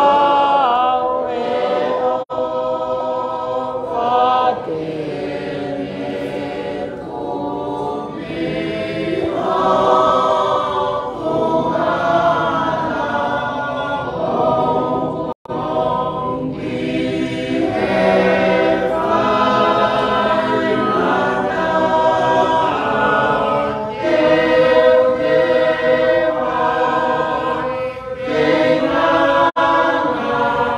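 A church choir singing a hymn in several voices, holding long notes, with a few very short breaks between phrases.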